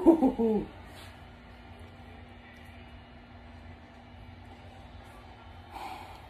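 A person's short hooting 'ooh'-like vocal sound in the first half second, its pitch bending up and down. After it comes only a faint steady low hum.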